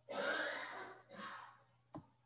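A person's breathing: a long breath followed by a shorter one, then a short click near the end.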